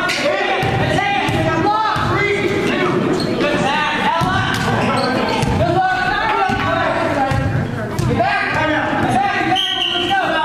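Voices of players and spectators calling out, echoing in a gymnasium, with a basketball bouncing on the court floor.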